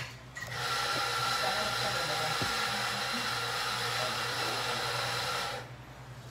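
A small electric motor or pump running steadily with a high whine. It starts about half a second in and cuts off abruptly after about five seconds.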